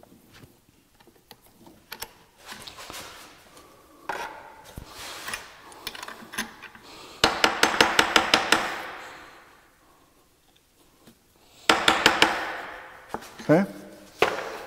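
Soft-faced mallet tapping a workpiece down onto parallels in a milling-machine vise to seat it flat: a quick run of about ten taps in under two seconds about halfway through, and another short flurry a few seconds later. Before them come quieter clinks and scrapes of parts being set in the vise.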